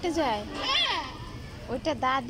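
A toddler's voice: three short, high-pitched babbling calls, one at the start, a higher rise-and-fall call a little before the middle, and another near the end.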